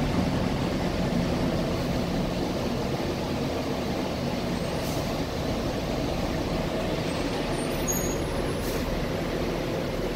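A bus heard from inside its passenger cabin as it drives along: a steady engine drone under road rumble.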